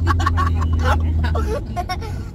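Steady low drone of a car heard from inside the cabin, with voices over it; the drone drops away about three-quarters of the way through.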